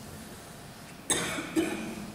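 A person coughing twice, close to a microphone: a loud cough about a second in, then a second, shorter one half a second later.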